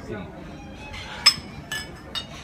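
Glassware clinking: one sharp, ringing clink a little over a second in, then a fainter one about half a second later.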